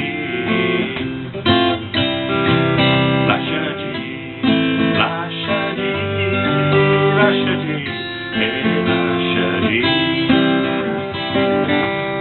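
Acoustic guitar strummed through a slow chord progression, with a man singing over it.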